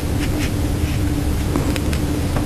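Steady low rumble with a constant hum, room or recording noise, and a few faint, brief brushing sounds as an ink brush writes characters on paper.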